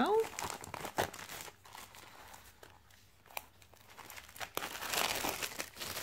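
Clear plastic wrap crinkling as it is pulled off a boxed card-making kit by hand, quieter in the middle and louder again near the end.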